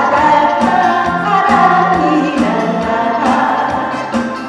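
A woman singing a trot song live into a handheld microphone over amplified accompaniment with a recurring bass line; her melodic line is loudest in the first three seconds.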